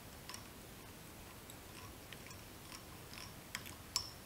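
Faint, scattered small clicks and ticks from a metal fly-tying bobbin holder and thread being handled while tying thread is wound down a hook shank in the vise, the sharpest click near the end.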